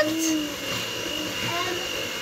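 A small electric motor running steadily with a constant high whine, under faint voices.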